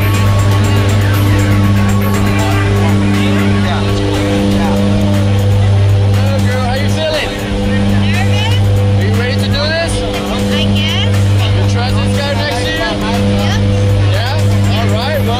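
Jump plane's engines and propellers droning inside the cabin: a loud, steady low hum that swells and fades every couple of seconds, with voices talking over it.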